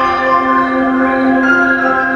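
Music playing, with long held notes and a change of note about one and a half seconds in.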